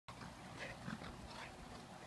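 Dog making a few short, high-pitched vocal sounds in quick succession during rough play with a puppy.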